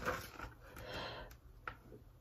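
Faint rustle of a picture-book page being turned by hand, with a small click near the end.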